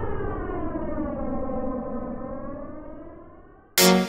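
A siren-like wail whose pitch slides slowly downward, levels off and fades out. Near the end a loud electronic dance track cuts in suddenly with pulsing synth chords, about four pulses a second.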